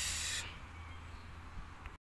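A short burst of hiss, about half a second long, at the start, then a low steady hum.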